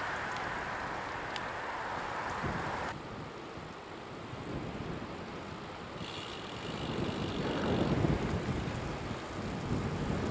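Wind rushing over the microphone and road noise from a bicycle riding along wet asphalt. The noise changes abruptly about three and six seconds in and grows louder and lower toward the end.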